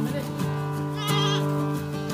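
Acoustic guitar background music, with a goat bleating once, a short quavering call about a second in.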